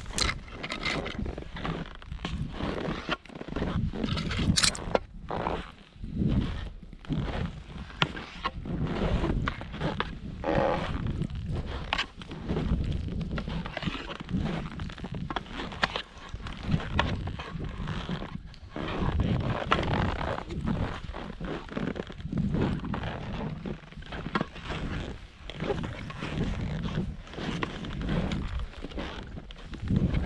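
Skis running through deep powder snow, a rushing swish that surges with each turn, mixed with wind buffeting the camera microphone.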